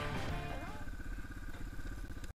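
Yamaha dirt bike engine running at low, even revs as the bike rolls slowly, with the tail of background music fading out in the first half-second.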